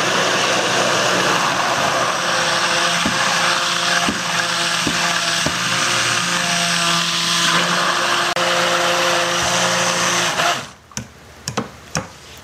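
Stainless-steel stick blender running on high in a plastic beaker, emulsifying grapeseed oil, coconut oil and salt water into a white cream. It runs steadily and cuts off near the end.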